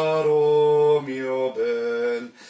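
A man sings a slow phrase of sustained notes, changing pitch a few times while the tone flows on without a break. It is a pure legato demonstration: the consonants are kept at the same level as the vowels, touching them without punching or bumping into them.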